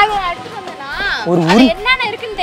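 People talking, one voice rising and falling sharply in pitch.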